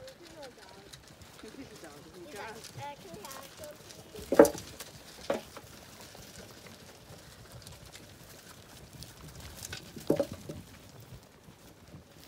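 Zwartbles sheep crowding a trough and eating rolled barley, with sharp knocks standing out about four and a half, five and a half and ten seconds in. Faint voices are heard near the start.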